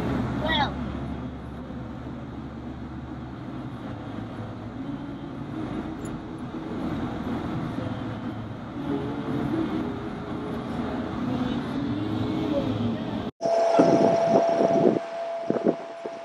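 Car interior while driving: steady low engine and road rumble with muffled voices in the cabin. About thirteen seconds in the sound cuts abruptly to a louder outdoor recording with wind buffeting the microphone and a steady tone.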